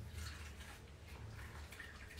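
Quiet room tone: a low steady hum with a few faint, light handling sounds.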